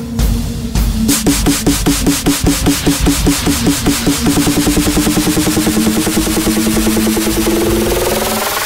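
Hard-dance electronic music in a build-up. A roll of pulses starts about a second in and speeds up steadily until it runs together, with a rising sweep near the end leading into the drop.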